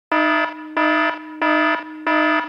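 Electronic alarm sound effect: a buzzy, pitched tone pulsing three times in two seconds. Each pulse is loud and then drops to a quieter tail before the next.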